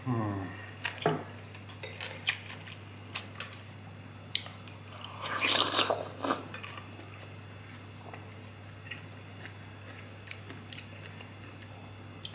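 Close-up eating sounds: a short hummed "mm" at the start, then chewing with scattered clicks of a metal spoon against ceramic bowls. About five seconds in comes a loud slurp of soup broth sipped from a spoon.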